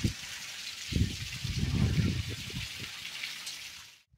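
Heavy monsoon rain falling steadily as a fine hiss, with low, irregular rumbles of strong wind buffeting the microphone from about a second in. The sound fades out near the end.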